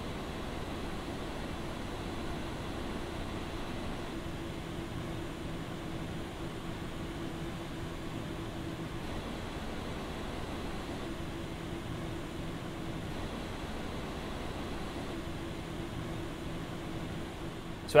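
Stock radiator fans of an ID-Cooling FrostFlow X 240 AIO liquid cooler running in a PC case: a steady rush of air with a faint steady hum under it, a bit higher pitched than Corsair's fans.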